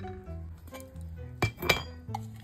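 Background music with a slow, steady bass melody; about one and a half seconds in, a few sharp clinks of a metal spoon against dishes as rice is served.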